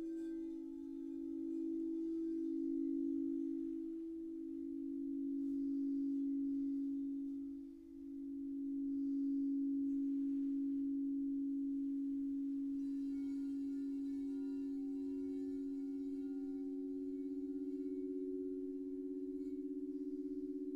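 Frosted quartz crystal singing bowls sounding under mallets rubbed in them: several low, sustained tones layered together, slowly swelling and fading with a wavering beat between them. The sound dips briefly about eight seconds in and then settles into one long, steady tone, and a higher bowl joins partway through.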